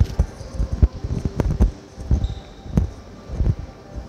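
Footsteps of someone walking on a hard, polished stone floor, a dull low thud at each step at an even walking pace.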